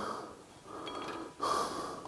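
A person breathing in close to the microphone between spoken phrases, with soft breaths and a stronger intake about one and a half seconds in.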